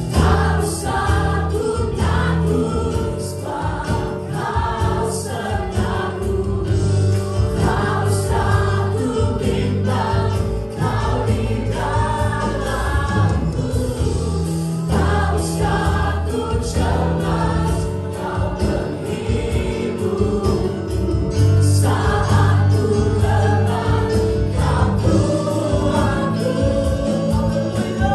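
A live worship band playing a contemporary Christian song sung in Indonesian: several singers on microphones over keyboards and guitar, with a steady bass line underneath.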